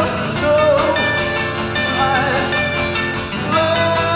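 Live band playing a song, with a voice holding long wavering sung notes over guitar and drums.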